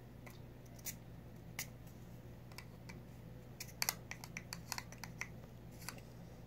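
Small sharp clicks and snaps from fingers working the cap of a small bottle, a few scattered at first, then a quick run of sharper clicks about four seconds in. Faint, over a steady low hum.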